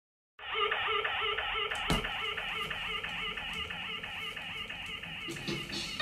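Roots reggae 7-inch single playing on a turntable: the instrumental intro starts about half a second in, a short repeating figure that sounds muffled and thin, with one sharp click about two seconds in. Near the end the full, brighter band sound comes in.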